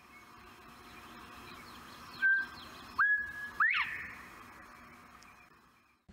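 Clear whistled notes over a faint steady outdoor hiss. A short held note comes about two seconds in; near the middle comes a longer held note that then sweeps sharply up and drops away. The sound fades in and out.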